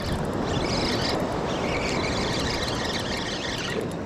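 Steady wash of surf and wind, with a Piscifun Carbon X II spinning reel being cranked as a hooked fish is reeled in.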